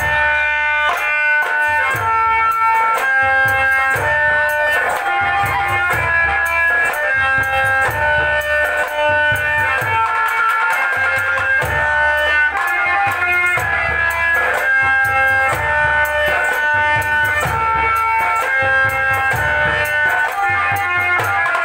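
Live Indian folk dance music: a melody of held notes moving in steps over a steady hand-drum beat.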